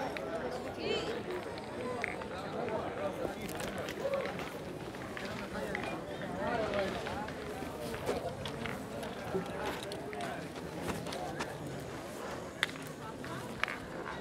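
Murmur of people talking across an outdoor petanque ground, steady and at a distance, with two sharp clicks near the end.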